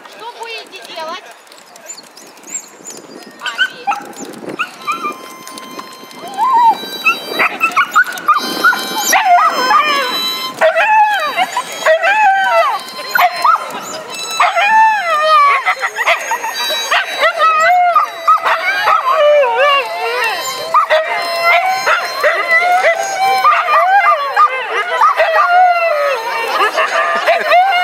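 Siberian huskies howling and yipping, several voices overlapping, growing much louder about six seconds in.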